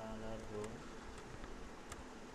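A few computer keyboard key clicks over a steady buzzing hum, with a brief pitched voice-like murmur in the first half second.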